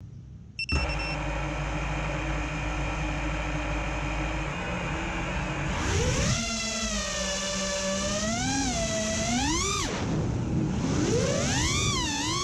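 An FPV quadcopter's brushless motors (iFlight Xing 2208 1800kv on a 6S battery) spinning at low idle with a steady whine after arming. About halfway through they throttle up for takeoff: the whine rises in pitch, swells and dips several times, breaks off briefly, then climbs again near the end.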